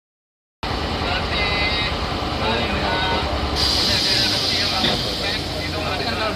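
Heavy industrial roller machine running: a steady low hum and mechanical din, joined about halfway through by a constant hiss, with voices faintly in the background.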